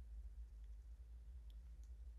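Near silence: room tone with a steady low hum and a few faint, short clicks.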